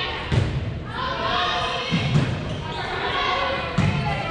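A volleyball being struck a few times during play, sharp hits that ring in a reverberant gymnasium, with raised voices of players and onlookers calling out throughout.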